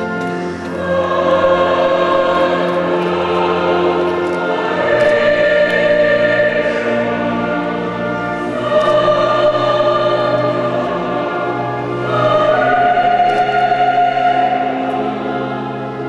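Church choir singing a slow sacred piece in long sustained phrases, with instrumental accompaniment. The phrases swell and ease about every three to four seconds.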